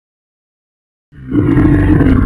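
A loud, deep monster roar voicing Venom, starting suddenly about a second in after silence.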